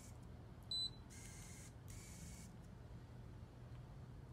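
Myoelectric prosthetic hand giving one short, high electronic beep about a second in, which signals that a different grip mode has been selected. It is followed by two brief, soft whirs, typical of the hand's finger motors moving into the new grip.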